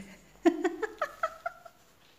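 A woman laughing: a quick run of short, high giggles starting about half a second in and fading away.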